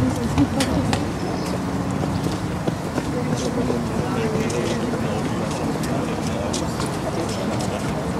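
Indistinct voices talking over steady outdoor background noise, with a few short sharp smacks of a football being caught in goalkeeper gloves.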